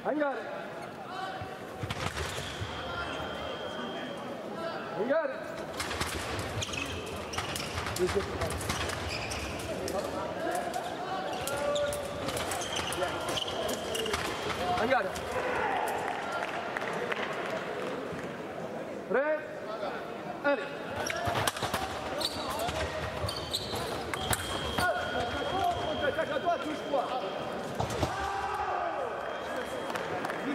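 Sabre fencing bout: fencers' feet stamp and thud on the piste, with sharp clicks among them. Voices call around the hall, and a high steady beep sounds a few times, which fits the scoring apparatus signalling touches.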